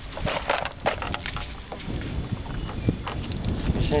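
Wind rumbling on the microphone, with scattered sharp knocks and crackles of camera handling in a small boat.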